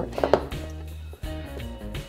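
Background guitar music with a steady low bass line, with a few light taps of small fused-glass pendants being set down on a table.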